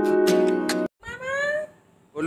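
Background music with held chords that cuts off abruptly just under a second in, followed by a toddler's single short, high call rising in pitch, taken as her saying 'mamma'.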